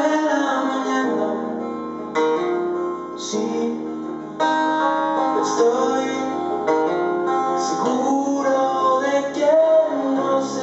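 A man singing while strumming an acoustic guitar, performed live. Chords change every second or two under a sung melody.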